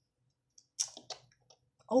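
A few short, soft clicks after a moment of dead silence, with a brief hissy burst among them, just before a boy's voice starts up again near the end.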